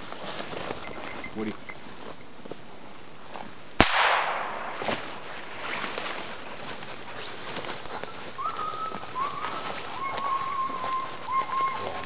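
A single gunshot about four seconds in, sharp and loud with a brief ringing tail, fired over a bird dog working grouse. Brush rustles around it, and in the later seconds a thin high whine comes in short held notes.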